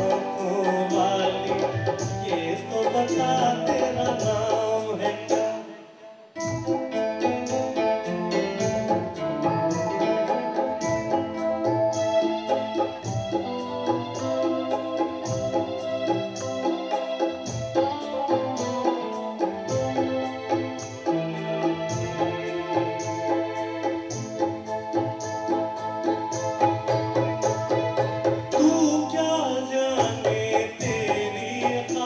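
Live band playing a Hindi film song: a Roland XP-60 keyboard carrying an organ-like melody over tabla and guitar, with a brief pause about six seconds in before the music comes back in.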